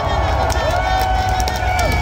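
Live rock concert heard from inside the crowd: singing voices hold a long note over a booming bass, with the crowd around.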